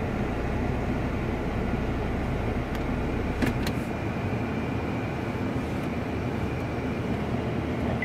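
Steady cabin noise inside a 2014 Honda Accord, with the climate-control blower running and the engine idling, and a few faint clicks about three and a half seconds in.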